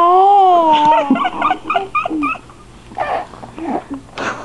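A dog howling along in one long, wavering note, then breaking into short whimpering yips and whines.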